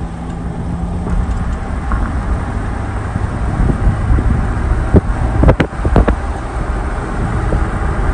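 Road noise inside a moving vehicle's cabin: a steady low rumble of tyres and engine. A few sharp knocks come about five to six seconds in.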